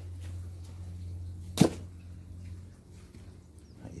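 A single sharp thump about a second and a half in, over a steady low hum.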